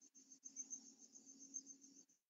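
Faint cricket chirping: a rapid, even, high-pitched pulsing with a faint low hum beneath it, picked up through an open microphone on the video call.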